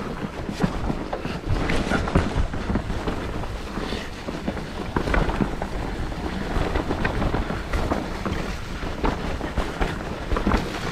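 Mountain bike riding fast down a dirt forest trail: wind buffets the camera microphone over a rumble of tyres on the ground, with frequent short knocks and rattles from the bike over bumps.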